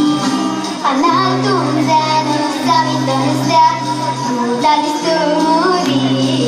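A young girl sings into a microphone over an instrumental accompaniment. Her voice comes in about a second in, above the steady bass line.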